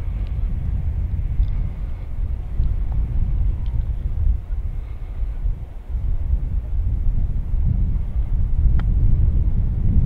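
Wind buffeting the microphone with a steady low rumble. A single faint click about nine seconds in is the club striking the ball on a short chip shot.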